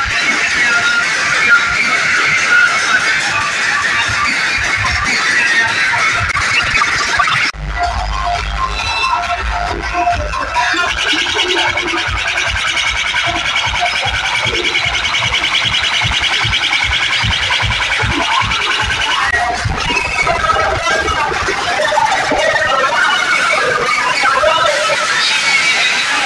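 Loud DJ music played through a street sound system's speaker stacks, with a heavy, pulsing bass beat. The music changes abruptly about seven and a half seconds in.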